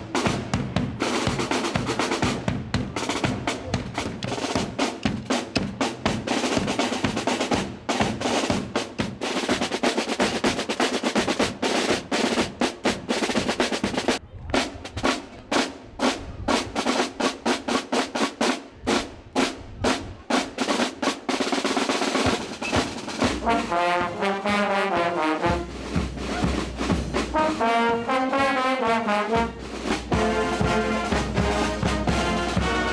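Marching band playing outdoors: snare drums and a bass drum beat a fast, dense drum cadence with rolls, and brass instruments carry a melody in the last several seconds.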